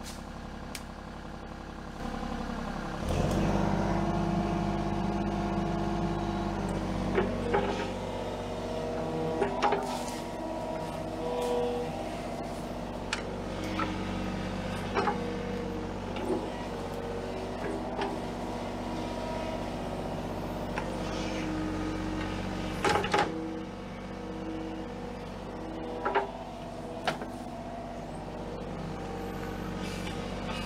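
Kubota mini excavator's diesel engine idling, then revving up about three seconds in and running steadily under load as the hydraulic arm and bucket work the dirt. Sharp clanks and knocks from the bucket and linkage come every few seconds, the loudest about two-thirds of the way through.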